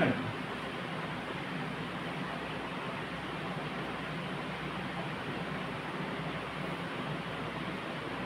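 Steady, even hiss of background room noise with no other sound in it.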